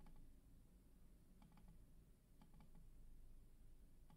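Near silence: room tone with a few faint computer clicks from a mouse and keyboard while a spreadsheet is being formatted.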